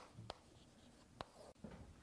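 Faint handwriting: a few short, sharp ticks of a pen or marker stroke against a quiet room, the clearest right at the start and about a second in.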